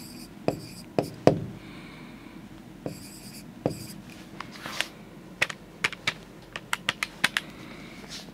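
Marker pen writing numbers on a whiteboard: sharp taps of the tip and short scratchy strokes, the taps coming quicker and closer together in the second half.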